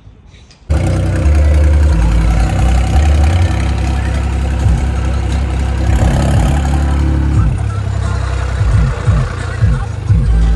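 A tractor running with loud, bass-heavy music playing from the large speakers in its cab; the bass moves in steps from note to note. The sound starts abruptly under a second in.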